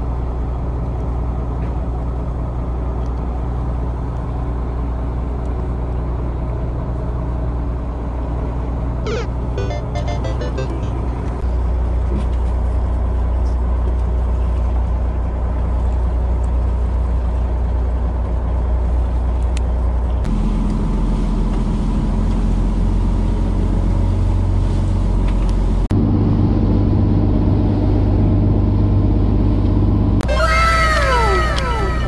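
Boat engine running with a steady low drone whose pitch shifts three times.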